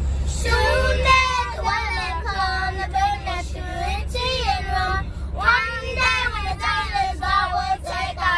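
Young girls singing together, their voices rising and falling in a sung melody, over the steady low rumble of the moving van.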